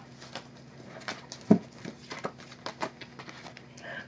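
Tarot cards being picked up and handled by hand: faint scattered clicks and slides of card stock, with one duller knock about a second and a half in.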